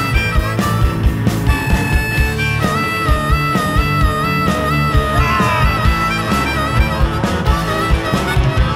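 Live rock band playing: a harmonica, played into a hand-held microphone, carries the wavering lead melody over electric guitars, bass and drums keeping a steady beat.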